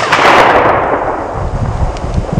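The echoing tail of a gunshot, fading over about a second and a half, with a few sharp clicks in the first half second, over a low rumble.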